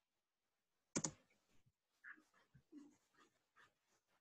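Near silence, broken by one short, sharp click about a second in and a few very faint soft noises after it.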